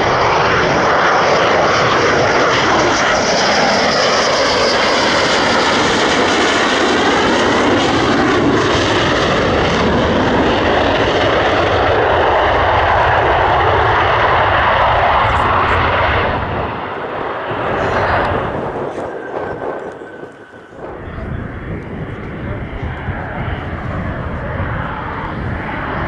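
Dassault Rafale M's twin Snecma M88 turbofans, loud as the jet passes low on final approach, its tone sweeping as it goes by. About sixteen seconds in the sound drops, dips briefly near twenty seconds, and then the engine noise of the next approaching Rafale builds.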